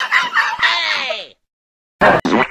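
A short crowing call whose pitch falls toward its end, cut off suddenly after about a second and a half.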